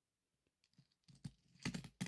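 Philippine 1-piso coins clicking against each other as they are handled and pushed around on a cloth. A few light clicks start about half a second in, with a louder cluster near the end.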